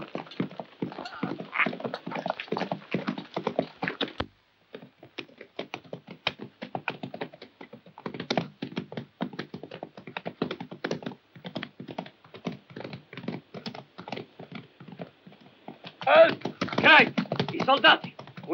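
Horses galloping on dry, hard ground: a dense, quick run of hoofbeats that drops out for a moment about four seconds in and then carries on. A man's voice calls out near the end.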